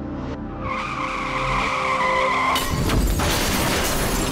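Car tyres squealing in a skid, one steady screech for about two seconds, then a loud crash of the car hitting something, with soft music underneath.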